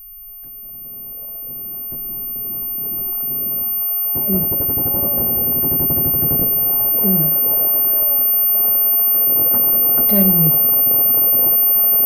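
Film sound design for a trauma flashback: a steady high-pitched ringing tone over a swelling jumble of distorted voices and rapid rattling, growing steadily louder.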